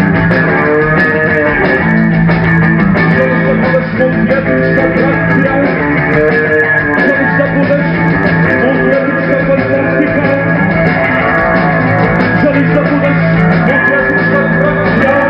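Live rock band playing steadily on electric bass and drum kit.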